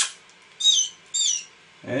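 Canary chick being hand-fed, giving shrill begging calls: three short calls about two-thirds of a second apart, each sliding down in pitch at its end.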